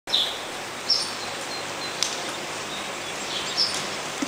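Small birds chirping: several short, high chirps scattered over a steady background hiss, with one sharp click about halfway through.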